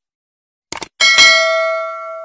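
Two quick clicks, then a bell chime struck about a second in that rings on and slowly fades: the sound effect of a subscribe button being clicked and its notification bell ringing.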